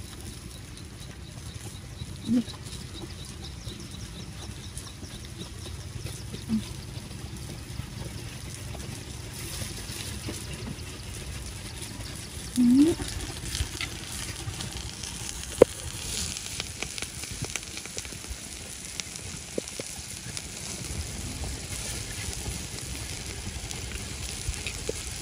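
Scallion oil sizzling in freshwater mussel shells on a charcoal grill as it is spooned on. The sizzle turns brighter and more hissing about ten seconds in, and a sharp spoon tap comes a few seconds later. Three brief vocal sounds, the loudest events, come at about 2, 6 and 13 seconds.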